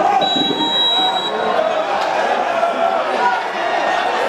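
Continuous overlapping voices of people talking and calling, with one steady, high whistle blast of about a second starting just after the start.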